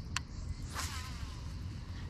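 A demonstration cast with a baitcasting reel: a sharp click just after the start, then, about three quarters of a second in, a brief hiss of line running off the spool that fades away, over a steady low rumble.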